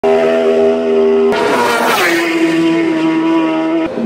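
Isle of Man TT racing motorcycle passing close at full speed. Its high-revving engine note holds steady as it approaches, then drops in pitch sharply about a second and a half in as it goes by, and settles at a lower note as it recedes.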